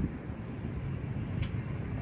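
Steady low rumble of distant highway traffic, with one faint tick about one and a half seconds in.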